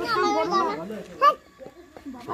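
Children's voices chattering close by, with a short, loud, high-pitched child's cry about a second in, then quieter.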